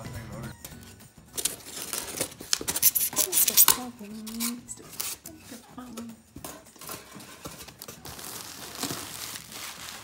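Cardboard shipping box and its plastic wrapping being opened: a run of sharp crinkling and tearing rustles for a couple of seconds, then fainter rustling with a brief voice in the middle.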